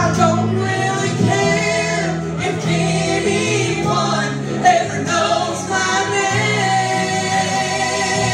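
Three women singing a gospel song in harmony through microphones, over instrumental accompaniment with steady low bass notes.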